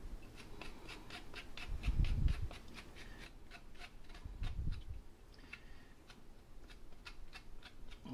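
A spoon scraping the skin off a knob of fresh ginger in quick, repeated short strokes, about three a second. Two dull low thumps come about two seconds in and again past the middle.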